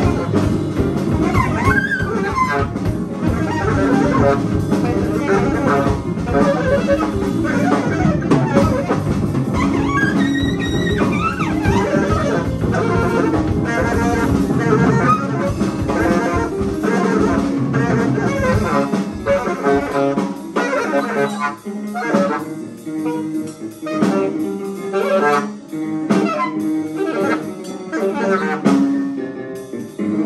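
Free-jazz quartet playing live improvisation: saxophone over piano, bass and drums. About two-thirds of the way through, the deep low end drops out and the playing thins into short, broken phrases.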